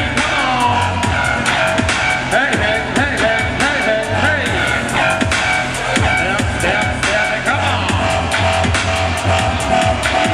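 Dubstep played live from electronic gear: deep bass notes held in long blocks under swooping, gliding synth lines and a steady beat.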